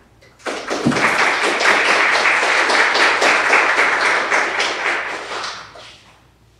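Audience applauding: many hands clapping, starting about half a second in and dying away near the end.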